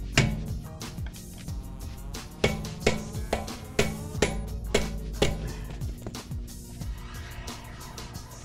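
Hammer blows on a chisel tool set against a car wheel to break loose a rear wheel that is stuck on its hub. One sharp ringing strike comes just after the start, then a run of about six blows roughly two a second, then a weaker one or two.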